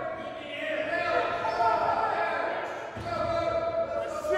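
A person's voice with dull thumps beneath it.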